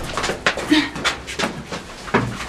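Several young people's breathy laughter and quick breaths: a rapid run of short, airy bursts, about five a second, with one brief voiced sound partway through.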